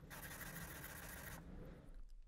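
Chip carving knife blade sliding across wet 800-grit sandpaper on a glass tile: a faint scrape that stops about a second and a half in.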